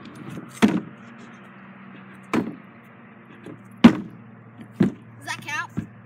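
Stunt scooter clattering on a plywood ramp and box during a bunny hop and 90 off: about five sharp knocks of wheels and deck on wood, the loudest just before the middle.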